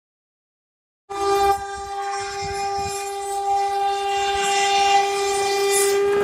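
An Indian Railways electric locomotive sounding one long, steady horn blast that starts suddenly about a second in, over the rumble of the approaching train, which slowly grows louder.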